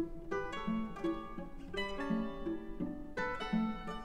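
Mandolin trio playing a ragtime tune, a lively stream of short plucked notes over a moving bass line.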